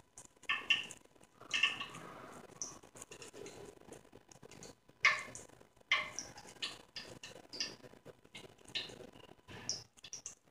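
Soft, irregular squishing and rustling of a hand pressing and flattening moist poha vada dough into a patty, in short bursts at uneven intervals.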